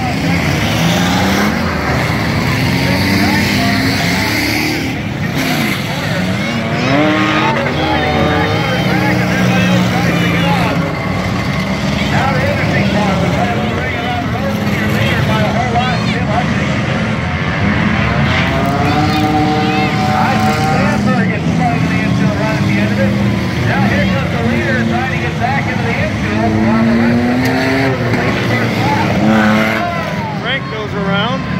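Several race car engines running around a dirt track together, their pitch rising and falling as the cars speed up, slow and pass.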